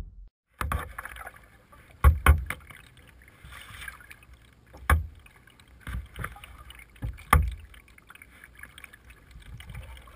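Kayak paddling with a double-bladed paddle on a plastic hull: water splashing and dripping from the blades, broken by a handful of sharp knocks every second or two, some in quick pairs.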